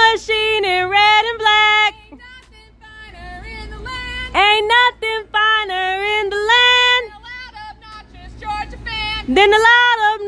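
Women's voices singing a call-and-response camp chant in short sung phrases, with a lull about two to four seconds in.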